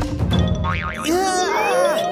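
Springy cartoon boing sound effect, its pitch wobbling quickly up and down and then gliding upward in several curved sweeps, over background music.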